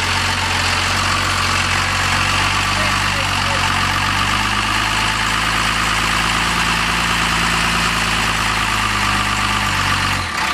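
Land Rover 4x4's engine running steadily at low revs as it crawls slowly over bare rock, with a constant hiss over it; the engine note shifts slightly about halfway through.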